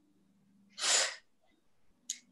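A short, noisy burst of breath from a woman, lasting about half a second, about a second in.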